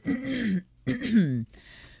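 A woman clearing her throat twice, two short rough sounds with a dropping pitch about a second apart.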